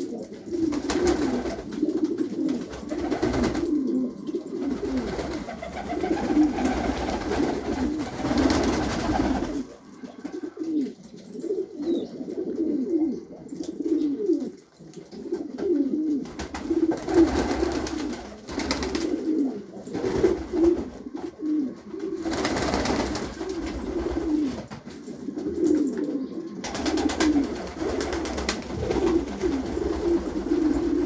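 Several domestic pigeons cooing in a loft, their low, rolling coos overlapping one after another. A rushing noise comes and goes underneath.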